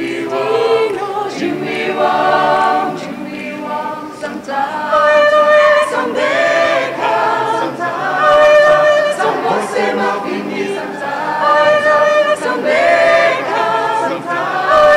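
A small mixed group of young men's and women's voices singing a lively song a cappella, in harmony, with no instruments.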